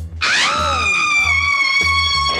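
A woman's long, high-pitched scream that rises at first and is then held for nearly two seconds, over a pulsing bass line of music.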